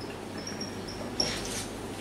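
Whiteboard marker squeaking in short, high-pitched strokes as it writes on the board, with a longer, scratchier stroke a little after a second in.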